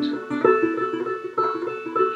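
Banjo, strung upside-down and played left-handed, picking a short instrumental phrase of plucked notes that ring into one another.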